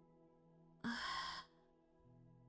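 A short, breathy spoken "uh", close to a sigh, about a second in. Faint, steady background music plays under it.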